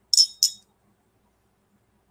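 Two quick clinks of glass on glass, about a third of a second apart, each with a brief high ring. They come from the whisky tasting glass as a few drops of water are being added to it.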